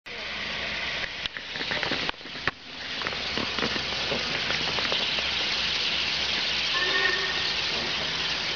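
Steam locomotive at a standstill blowing off steam in a steady hiss, which cuts out briefly a few times in the first three seconds and then runs evenly.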